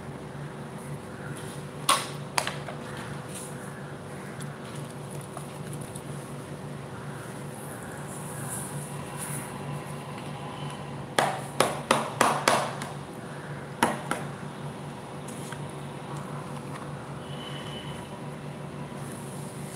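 A steady low hum with a few sharp knocks and taps: two about two seconds in, a quick run of them around eleven to thirteen seconds in, and one more just after.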